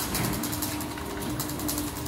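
Somfy Dexxo garage door opener motor running steadily with a hum and a few light clicks, driving a sectional door down its ceiling rail. This is the automatic learning cycle in which the opener records its travel limits, and the door is coming down faster on this pass.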